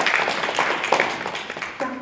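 Audience applauding: many hands clapping at once, thinning out toward the end.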